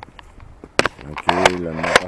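A low rush of wind on the microphone, a sharp click a little under a second in, then a man's voice starting with a few more sharp clicks mixed in.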